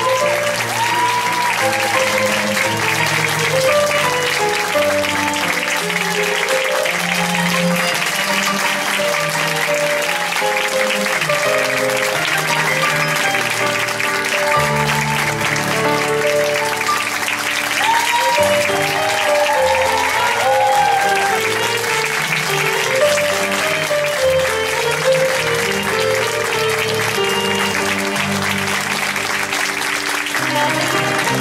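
Audience applauding steadily over instrumental music, with held notes changing throughout.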